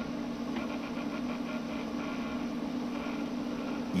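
A motor-driven Nipkow scanning disc spinning, a steady low hum with a hiss. The disc is still short of the speed at which the picture locks into sync.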